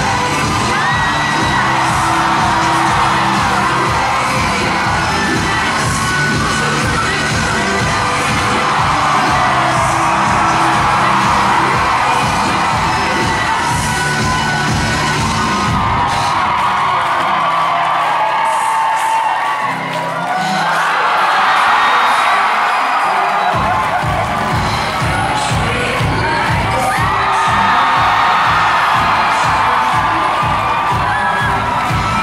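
Pop track playing loud through a concert sound system, with a crowd cheering and screaming over it. The bass and beat drop out a little past halfway and come back about two-thirds of the way through.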